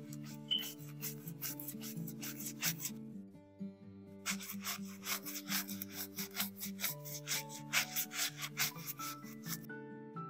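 A brush scrubbing a coin in wet, foamy cleaning lather, quick back-and-forth strokes at about four a second. The scrubbing pauses for about a second near the middle.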